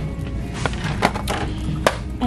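Background music with three sharp knocks of a boxed product being handled and put into a plastic shopping cart, the sharpest near the end.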